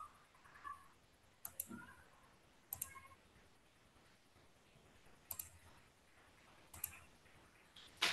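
A few faint computer mouse clicks, spaced a second or more apart, over near silence.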